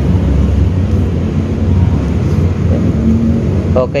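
Steady deep rumble of background noise with no clear beginning or end, with a man's voice briefly near the end.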